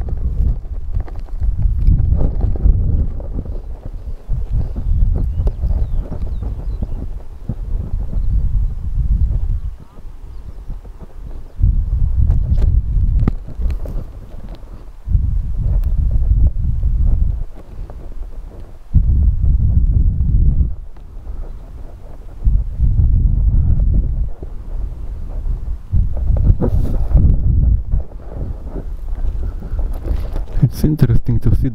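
Wind buffeting an outdoor microphone: a loud low rumble that comes and goes in gusts, with several brief lulls.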